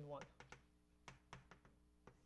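Chalk on a blackboard: a faint run of about six sharp, uneven clicks as letters are written and underlined.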